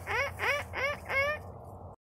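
Domestic hens calling, four short rising squawks at about three a second, the last one a little longer. The sound stops abruptly just before the end.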